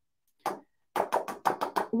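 Cardstock and a plastic stencil being handled: one short rustle about half a second in, then a quick run of light clicks and taps in the last second.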